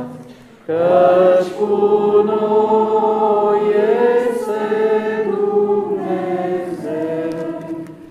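A church congregation singing an Orthodox hymn together, unaccompanied, in several voices. There is a short break just before the first second, and the singing ends near the close.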